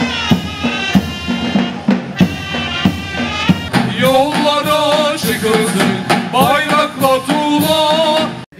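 Ottoman mehter band playing: shrill wavering zurna melody over regular davul drum strokes, with the band singing in chorus from about halfway in.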